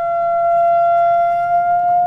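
A loudspeaker driving a pyro board, a two-dimensional Rubens tube, plays a loud, steady high test tone that creeps very slightly up in pitch. The tone is held at a frequency that sets up a standing wave in the gas box, and it is loud enough to be painful.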